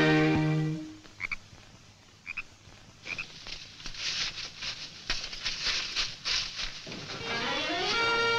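Film score fading out about a second in, then frogs croaking: a few short high chirps, then a run of rapid croaks. Music rises again near the end.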